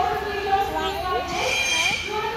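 A parrot calling: a run of short gliding calls about halfway through, then a held high whistle near the end, mixed with a woman's voice.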